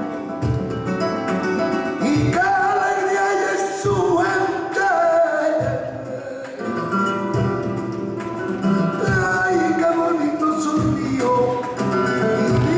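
Live flamenco tangos: two Spanish guitars with cajón and hand-clapping, the guitars alone for about the first two seconds, then a highly ornamented flamenco vocal line comes in over them, pausing briefly around six seconds in.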